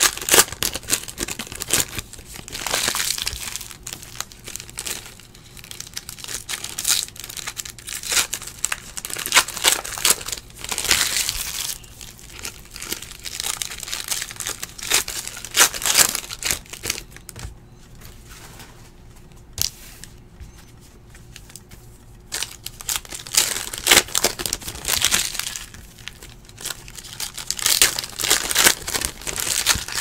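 Foil trading-card pack wrappers being torn open and crinkled by hand, in irregular bursts, with a quieter spell in the middle.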